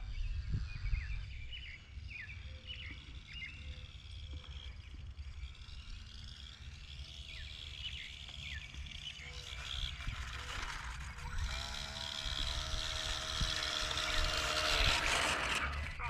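Outdoor ambience: wind rumbling on the microphone, with birds chirping now and then in the first half. Later a faint droning hum grows a little louder.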